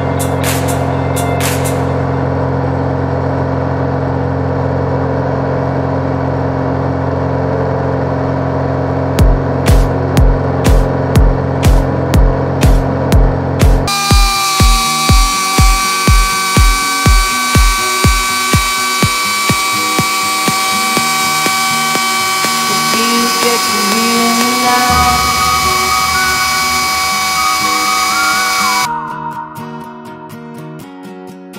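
Electronic music without vocals: sustained synth chords, a steady kick-drum beat of about two a second through the middle, then held synth tones with a melody, dropping in level near the end.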